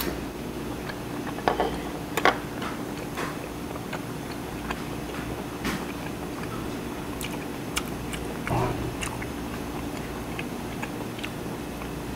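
A person chewing a mouthful of food close to the microphone, with soft mouth clicks and smacks at irregular intervals.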